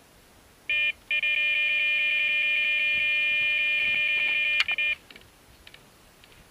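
Electronic carp bite alarm sounding a short beep and then one continuous high tone for about four seconds: a carp taking the bait and running, pulling line off the reel. A sharp click comes just before the tone cuts off.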